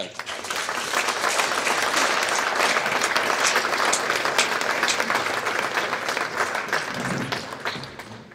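Audience applauding at the end of a lecture. It is a dense patter of many hands clapping that swells within the first second, holds steady, and fades out near the end.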